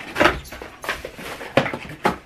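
Cardboard shipping box being torn open by hand: a few short rips and scrapes of cardboard with rustling in between.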